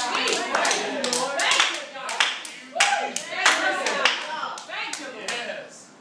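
A congregation clapping in scattered, irregular claps, with voices calling out among them. The clapping and calls die down toward the end.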